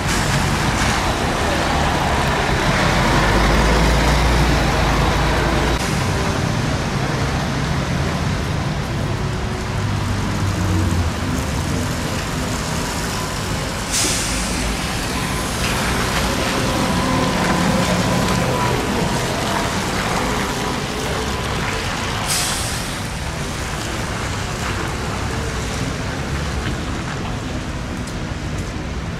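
Road traffic on a wet street. A city bus pulls away with a low engine rumble, then an articulated trolleybus comes up and turns. Two sharp air-brake hisses come about halfway through and again some eight seconds later, over steady tyre and traffic noise.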